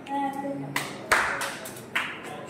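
Hand clapping: a few sharp claps and a short burst of applause in the middle, with faint voices.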